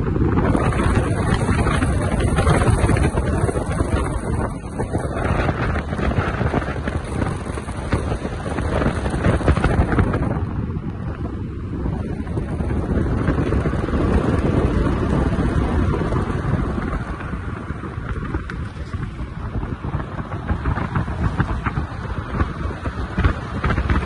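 Wind rushing and buffeting across a phone microphone held at the open window of a moving car, over the low rumble of the car's tyres and engine on the road. The level swells and dips continuously.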